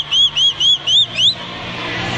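A shrill whistle blown in quick short blasts, about four a second, each blast bending up and down in pitch. The train ends in one rising note a little over a second in. Crowd cheering runs underneath.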